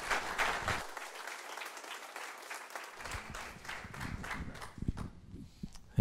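Congregation applauding, the clapping thinning out and dying away near the end.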